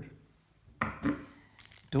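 Quiet handling of a windsurf footstrap being laid and positioned on a foam deck pad: a short scuff about a second in, then a few light clicks.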